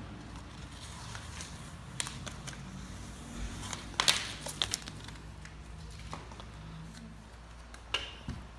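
A few light clinks and knocks of a glass display cover being handled and set down, with a cluster of them about four seconds in.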